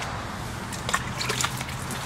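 Wet sanding: 600-grit wet/dry sandpaper on a hand block rubbed over wet fibreglass gel coat, a soft wet scrubbing with a few faint scrapes about a second in, cutting back heavily oxidized gel coat.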